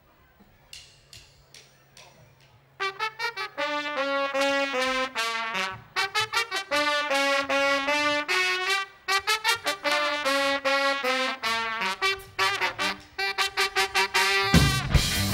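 Horn section of two trumpets and a saxophone playing a riff of short, punchy notes in phrases, coming in about three seconds in after a few light taps.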